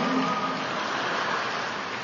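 Steady, even hiss of the recording's background noise in a pause between sentences of a talk, with a faint held tone from the last word dying away in the first moment.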